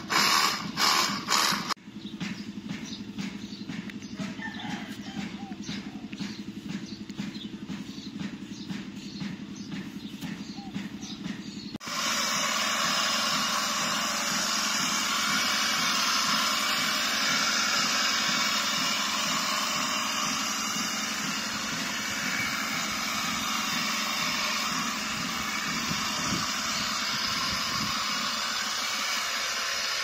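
Cordless battery-powered pressure washer: its pump motor runs with a steady, fast-pulsing hum. About twelve seconds in, a loud steady hiss of water spray comes in over the hum and continues. A couple of seconds of regular clicking come first.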